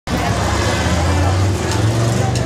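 Loud, sustained low bass notes from a rock band's stage amplifiers, the pitch stepping up about one and a half seconds in.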